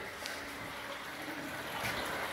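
Spring water running with a steady, even rush.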